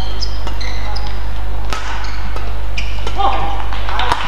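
Badminton rally: sharp racket-on-shuttlecock strikes, the loudest about two seconds in, with short high squeaks of court shoes on the floor, over a steady low hum.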